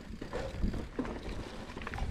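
Mountain bike rolling along a dirt singletrack, with a low tyre rumble and scattered knocks and rattles from the bike over bumps, and wind rushing on the microphone.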